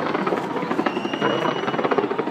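Fireworks going off in a rapid, continuous barrage of bangs and crackles. A thin whistle tone sounds over it from about a second in.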